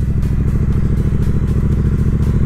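Triumph Bonneville T120 parallel-twin engine running steadily as the motorcycle cruises at an even speed, with a rapid, even pulse in its note.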